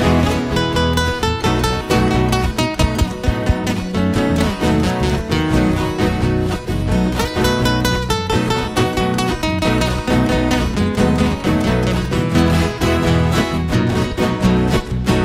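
Two Brazilian violas caipiras (ten-string folk guitars in paired courses) playing an instrumental break of a moda de viola, with a busy picked melody over steady accompaniment and no singing.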